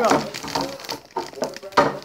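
A boy talking, with a few short noisy sounds in the second half.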